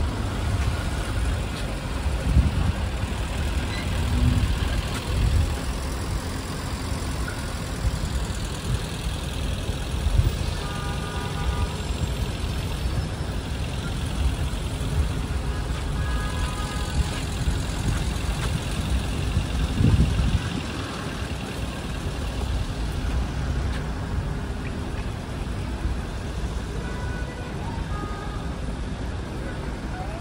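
City street traffic: cars and a city bus idling and creeping along in a queue, a steady low engine rumble. A few short high tones sound around the middle.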